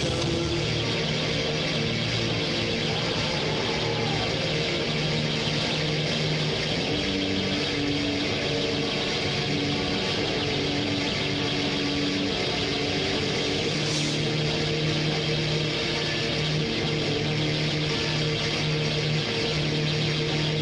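Live rock band playing: a dense, steady wall of distorted electric guitars, bass and drums, with long held notes that change every second or two.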